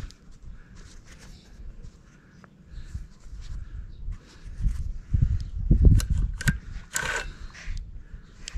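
Low, uneven rumbling of wind and handling on the microphone, strongest in the second half, with a few sharp clicks about six to seven seconds in as a hand handles the chainsaw's bar and chain.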